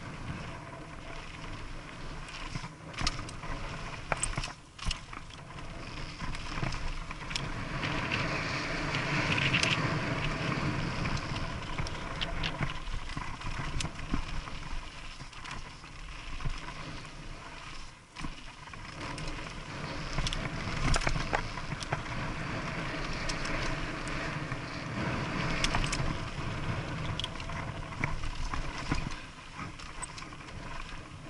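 Mountain bike riding a dirt trail: a steady rush of tyre and wind noise that swells and fades, broken by frequent sharp clicks and rattles from the bike over bumps.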